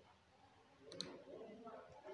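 A computer mouse clicking once, a sharp double tick about a second in, over faint room tone.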